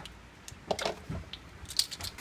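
Light handling sounds of plastic measuring spoons over a steel bowl: a soft rustle about a second in and a sharp click near the end.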